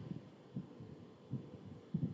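A few faint, soft, low thumps, irregularly spaced, from a stylus tapping and moving on a writing tablet as a word is handwritten.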